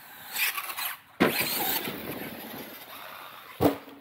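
Brushless RC monster truck driving on snow, its electric motor whining. The sound cuts off abruptly about a second in and comes back suddenly loud, then fades. A sharp knock near the end.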